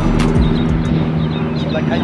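A steady low mechanical drone, like an engine running, holding an even pitch, with faint voices over it.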